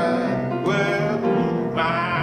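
A man singing a gospel hymn with instrumental accompaniment, the voice rising and falling over held chords.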